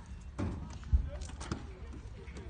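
A horse's hooves thudding on the sand arena surface at a canter, a few beats about half a second apart, with one loud low thump about a second in.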